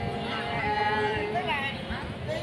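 A woman singing sli, the Nùng people's folk song, in long held notes that glide up and down between phrases, with crowd chatter behind.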